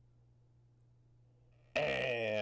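A faint steady low hum. Near the end a sudden loud start as the starting gate opens, with the race caller's voice beginning the call of the break.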